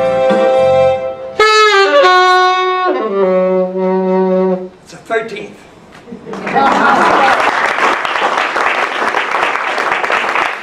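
A saxophone plays the closing notes of a tune, ending on a long held low note about four and a half seconds in. After a short pause the audience applauds.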